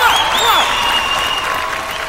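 Studio audience applauding, with a few voices calling out over it in the first half second.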